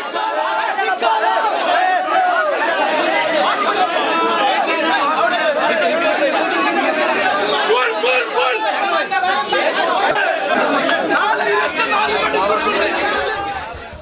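Crowd of young men, many voices talking over one another in a tense commotion. It fades out near the end.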